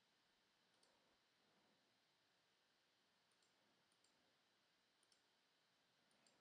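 Near silence, with a handful of very faint, scattered computer mouse clicks.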